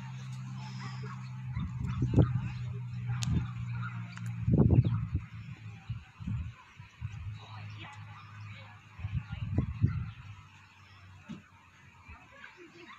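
Dogs barking in short bursts, loudest about four and a half seconds in, with more around two and nine and a half seconds in, over a low steady hum.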